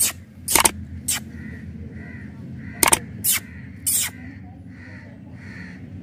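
A puppy licking a hard lollipop: a handful of sharp, wet smacking clicks in two short clusters, the loudest near the start and around three to four seconds in.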